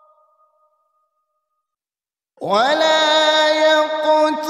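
A male reciter's voice in melodic Quran recitation (tilawat): the end of one phrase fades out, then after about two seconds of silence the next phrase begins with a quick rise into a long held note.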